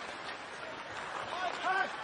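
Hockey arena crowd noise during live play, a steady murmur, with a short voice calling out over it near the end.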